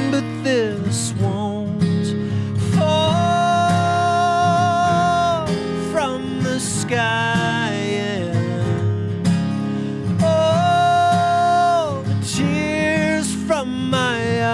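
Live male vocal with acoustic guitar: a singer-songwriter singing over his own acoustic guitar, holding two long notes, each sliding down at its end, about three seconds in and again about ten seconds in.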